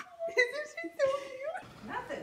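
A puppy whimpering: several short, high whines, the last one longer and rising at its end.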